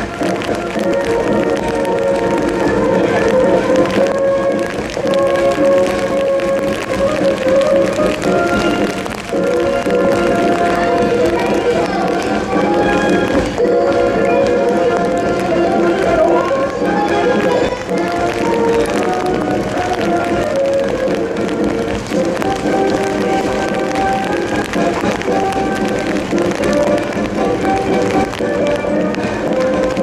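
A military band playing a march, with sustained brass-band notes throughout.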